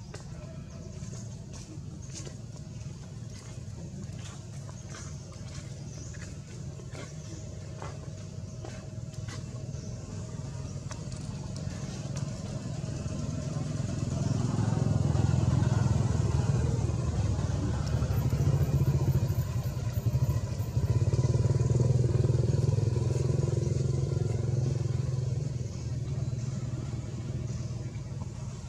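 A motor vehicle engine running with a steady low hum that swells about halfway through, stays loud for several seconds, and eases off near the end.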